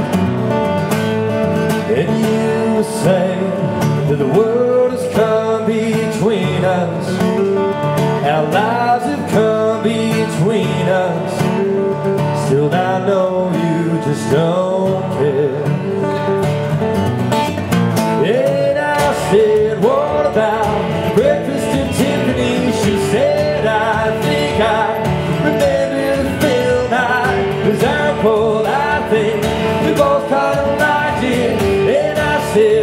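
Live country song: a man sings while strumming a steady rhythm on an acoustic guitar.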